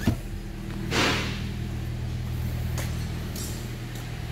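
A 2012 Toyota Corolla's 1.8-litre four-cylinder petrol engine idling steadily. There is a click at the start and a brief rush of noise about a second in.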